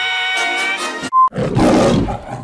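A bit of music with held notes, a short high beep just after a second in, then the MGM logo's lion roar near the end.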